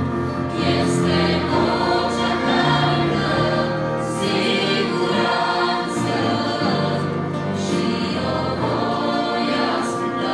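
A women's vocal group singing a Romanian gospel hymn, with instrumental accompaniment holding sustained low notes beneath the voices.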